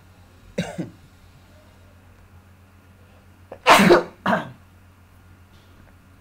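A person coughing twice, close together, about four seconds in, the first cough the louder, after a brief throat sound just after the start; a steady low hum runs underneath.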